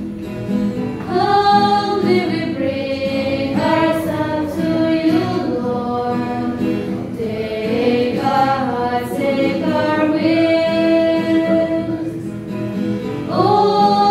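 Choir singing the offertory hymn at Mass, voices holding long notes that move from pitch to pitch every second or so.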